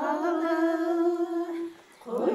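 A woman's voice humming a slow melody, holding one long steady note that stops about a second and a half in.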